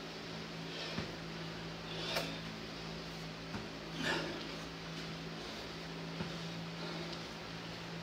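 Steady low hum of room ventilation, with a few soft thuds of feet landing during dumbbell lunges and two short breaths out about two and four seconds in.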